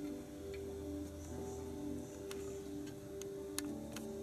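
Soft background music of slow, sustained chords that change gradually, with several faint clicks in the second half.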